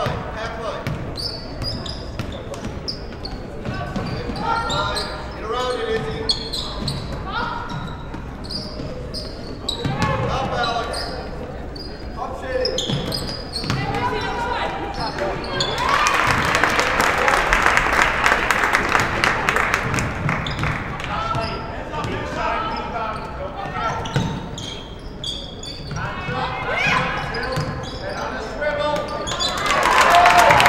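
A basketball being dribbled on a hardwood gym floor, with players and coaches shouting across the hall. About halfway through, the crowd cheers and claps for a few seconds.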